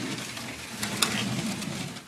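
Sheet-metal air terminal vent unit scraping and rattling as gloved hands slide and turn it around on a workbench, with a sharp knock about a second in.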